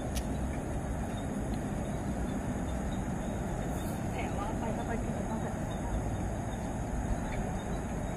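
Steady low rumble of outdoor city ambience, distant road traffic, with faint background voices.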